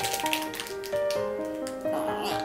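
Thin plastic packaging crinkling and crackling in quick bursts as a toy bag is pulled open, over background music with a simple melody.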